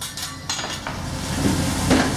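Sizzling on a hot teppanyaki griddle while steam rises off it, with a metal spatula knocking against the steel plate, once about half a second in and more sharply near the end.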